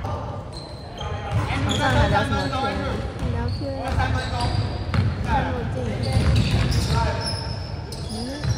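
Players' voices calling out on an indoor basketball court, with a basketball bouncing on the wooden gym floor, in a large hall.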